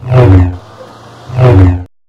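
Sci-fi transporter 'beam' sound effect: two loud, deep, humming pulses about a second apart, cut off abruptly near the end.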